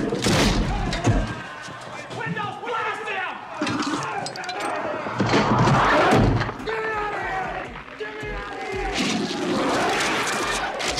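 Horror film sound mix: screaming and yelling voices without words over music, with heavy thuds during the first second as the monster attacks.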